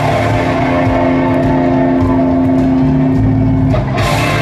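Live rock band playing in an arena, with an electric guitar holding one long sustained note over bass and drums until the note changes near the end.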